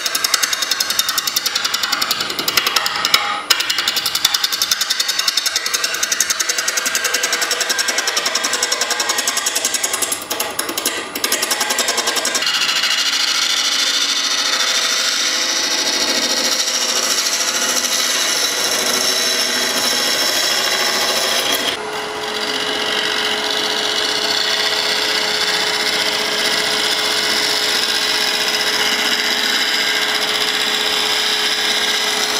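Carbide negative-rake scraper cutting a spinning epoxy-resin bowl blank studded with hardwood cubes on a wood lathe. For the first dozen seconds the cut is a fast, even rattle, broken twice by brief pauses, then it becomes a smoother, steady hiss. A steady hum joins about 22 seconds in.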